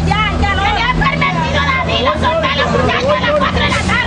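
Several voices talking and calling out over one another, with a steady low hum underneath.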